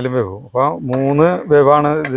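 A person's voice sounding steadily, with some long-held, bending tones, over light clinking of metal kitchen utensils.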